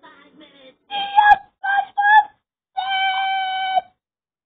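A young voice singing: a few short notes, then one long held note that cuts off just before the end.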